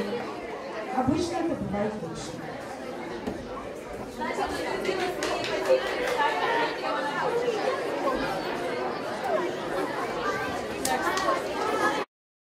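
Indistinct talk of several people at once in a large room, overlapping voices with no clear words.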